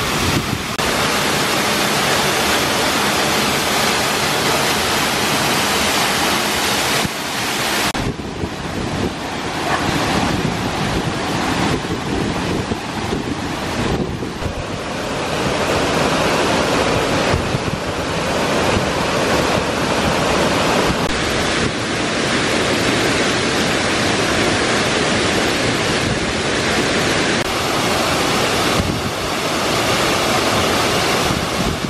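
Mountain waterfall and white-water stream: a loud, steady rush of falling and tumbling water. The rush changes in character about 8 seconds in and again later, as the view moves from the waterfall's plunge pool to water cascading over boulders and then to another narrow cascade.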